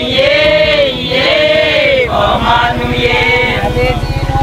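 A group of men and women singing together, holding long notes that rise and fall.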